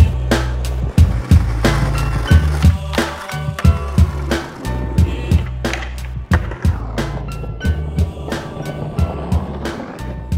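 Hip-hop beat with a steady bass line, mixed with skateboard sounds: wheels rolling on concrete and sharp clacks of the board popping and landing.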